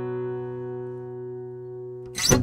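Final chord of an acoustic guitar ringing out and slowly fading at the end of a song.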